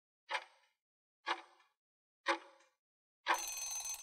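Quiz countdown-timer sound effect: a short tick once a second, three times, then a ringing alarm lasting under a second as the timer reaches zero.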